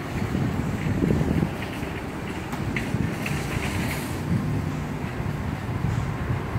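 Wind buffeting a handheld camera's microphone: a steady, low, uneven rumble.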